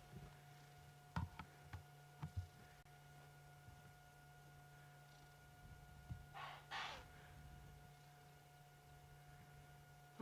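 Near silence with a faint steady hum, broken by a few faint clicks early on and, about six and a half seconds in, two short snorts in quick succession: distant impala alarm calling.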